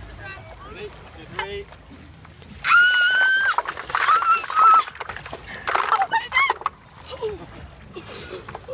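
A woman shrieks as ice-cold water is tipped over her head from metal buckets: one long high-pitched scream, then more cries mixed with the splash of water.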